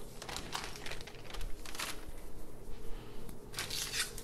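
Plastic food bags crinkling and rustling as they are handled and moved, in short irregular rustles with a louder one near the end.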